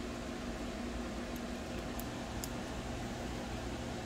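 Steady, quiet hum of running equipment with a faint low tone, fan-like. A few faint light clicks come from a small screwdriver tightening screws into a graphics card's circuit board.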